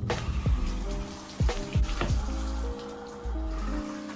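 Background music with a steady beat, over the steady hiss of a shower running.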